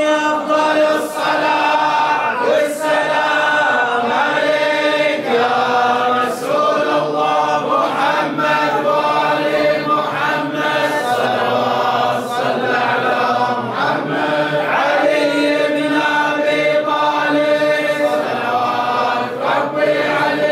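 A group of men chanting a Mawlid praise chant together in unison, unaccompanied.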